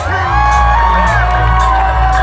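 Live hip-hop music over a concert sound system, with heavy bass and a long held sung vocal line, and a crowd whooping.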